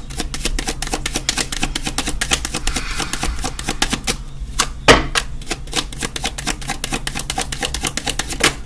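A deck of tarot cards being shuffled by hand, the cards clicking and flicking against each other in a fast, continuous patter. One louder knock comes about five seconds in.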